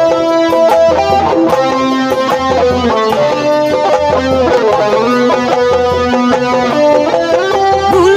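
Instrumental dangdut-style music from a Sundanese street troupe: a guitar-like melody line over long low bass notes, with drumming from a large barrel drum and kendang hand drums.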